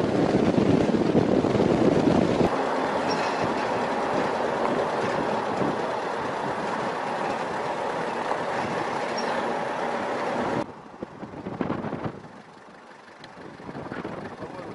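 Steady rumbling rush of a vehicle driving at speed over a desert road, with wind noise on the microphone. About ten and a half seconds in it cuts off abruptly to a much quieter background.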